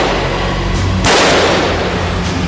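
Two loud bangs about a second and a half apart, each with a long noisy tail, over a steady low music drone.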